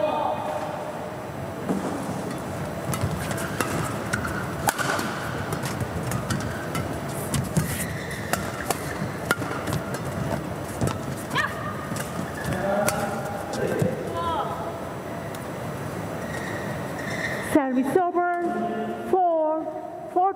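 Badminton rally: rackets strike the shuttlecock in a string of sharp cracks, shoes squeak on the court mat, and a crowd murmurs in the arena. Near the end, after the point is won, a loud voice shouts.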